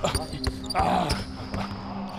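Basketball dribbled hard on a hardwood gym floor: several sharp bounces at an uneven pace during one-on-one ball handling.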